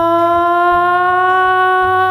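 A woman singing one long held note, its pitch creeping slightly upward, over an acoustic guitar accompaniment.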